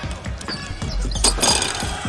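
A basketball bouncing on a hardwood court, several sharp bounces about a second in, over music playing in the arena.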